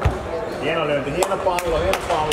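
Badminton play on a wooden sports-hall floor: a thud of a footfall right at the start and a few sharp clicks of rackets striking the shuttlecock, with people talking in the background.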